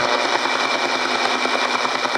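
Shortwave receiver in AM mode, tuned through about 11.525 MHz, playing a radar-type pulsed signal through its speaker: a fast, even train of short pulses over static, like the Russian Woodpecker but an unusual digital type of signal.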